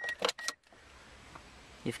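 A man's voice briefly at the start, then near quiet: a faint, steady hiss of background noise inside the car until he speaks again near the end.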